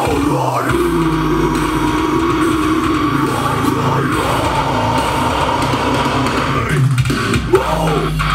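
Metalcore backing track with distorted guitars and drums. Over it, a harsh screamed vocal is held for several seconds and breaks off shortly before the end.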